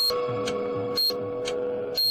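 Countdown sound effect: a steady hum with a short high beep and tick about once a second.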